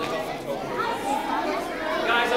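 Chatter of many children's voices talking at once, overlapping with no single clear speaker.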